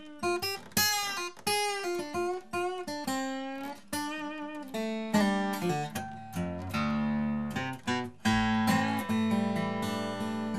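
Steel-string acoustic guitar in DADGAD tuning played fingerstyle in a blues style: a lick of quick plucked single notes, then from about five seconds in low bass notes left ringing under the melody.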